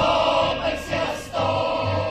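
A choir singing with music, in short phrases with brief breaks between them.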